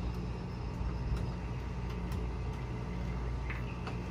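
A steady low hum with a few faint clicks as hands work at a vehicle battery's terminals and cables.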